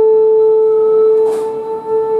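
A man's voice holding one long, steady sung note in Sámi joik style, with a brief hiss a little past halfway.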